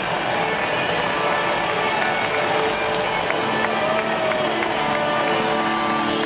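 Live rock band playing electric guitar and drums through an arena PA, heard from within the crowd, with crowd noise mixed in.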